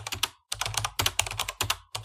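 Keyboard typing sound effect: a fast run of key clicks, about ten a second, with a brief pause about half a second in, matching text being typed out on screen.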